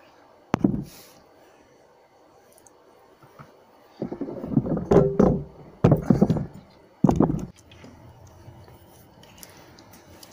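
Parts and tools being handled on a workbench: a sharp knock about half a second in, then a run of knocks and clattering with a brief metallic ring between about four and seven and a half seconds in, over quiet room tone.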